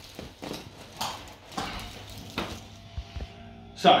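Handling noise around a padded treatment table as a person settles onto it and someone moves about, four soft knocks. Quiet background music comes in past the halfway mark.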